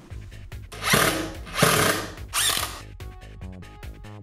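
Cordless drill run in three short bursts, fastening the 2x4 lumber of a wooden X-frame.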